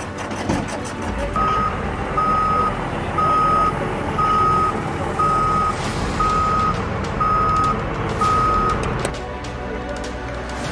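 Vehicle reversing alarm: eight steady, high-pitched beeps about one a second, over a low vehicle rumble.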